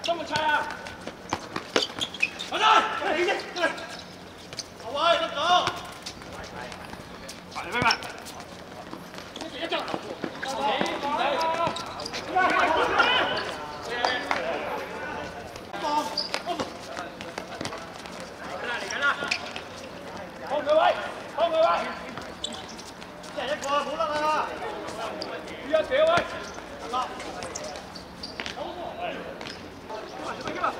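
Footballers shouting and calling to each other during play on an outdoor pitch, with now and then the sharp thud of the ball being kicked.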